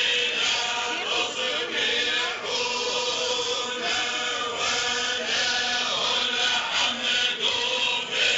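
A group of voices chanting together in a held, repeating melody, with a steady sung note underneath.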